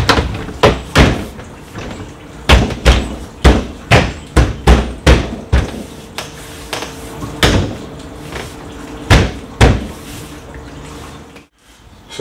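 A dozen or so irregular knocks and thumps as a used RV window is pushed and worked into its cut opening in a camper's side wall, its frame knocking against the wall panel.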